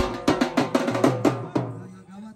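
Dhol drums beaten in a fast, even rhythm, the strokes dying away about one and a half seconds in.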